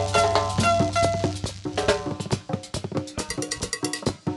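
Live chanchona band playing an instrumental passage: a melody over a held upright-bass note, with quick, dense percussion strokes taking over in the second half.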